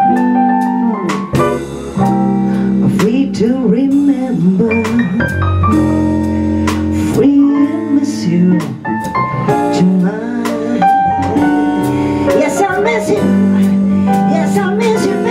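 Live blues-jazz band playing a slow song: electric bass, electric guitar, keyboard and drums, with a woman singing a wavering melodic line over them.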